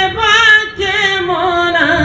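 A Sambalpuri folk song, one singer's voice carried over the stage PA. The line wavers with vibrato, breaks briefly, then holds a long note that slides down in pitch toward the end.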